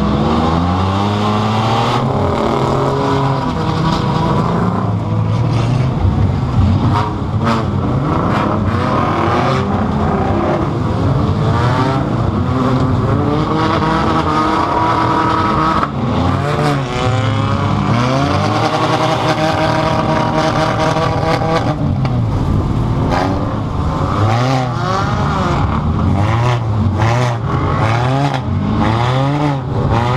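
Engine of a 2005 Pontiac Grand Prix enduro car, heard from inside its stripped cabin, revving up and down over and over as it is driven hard. Other race cars' engines run alongside, with scattered knocks and rattles from the car's body.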